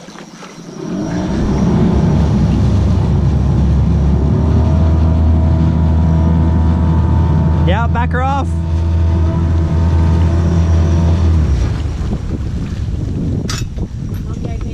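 A boat's motor is driven hard in reverse. It rises to a steady low drone about a second in, with the propeller churning the water, and eases back near the end.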